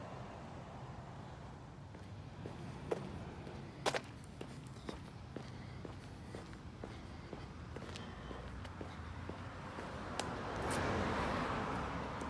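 Running footsteps on asphalt, a steady stride of about two to three footfalls a second, with a rushing noise that swells near the end.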